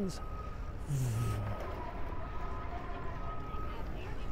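Wind and road rumble of a bicycle ride picked up by a bike-mounted camera, with a faint high-pitched tone sounding on and off in the background and a brief low hum about a second in.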